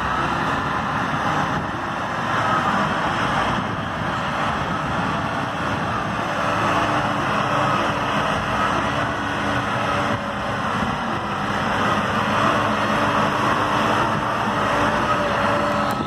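Farm tractor's diesel engine running steadily under load as it moves a loaded sugarcane trailer.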